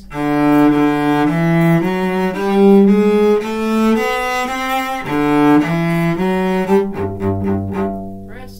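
Cello bowed, playing a march melody of separate sustained notes, about two a second, then dropping to lower, shorter repeated notes about seven seconds in.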